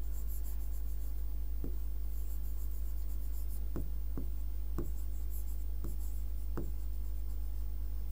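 Handwriting on a teaching board with a pen: scattered light ticks and faint scratching strokes as the letters are written, over a steady low hum.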